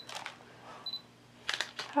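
A few short clicks and rustles from small plastic candy packaging being handled, a cluster of them about one and a half seconds in, with two faint brief high beeps.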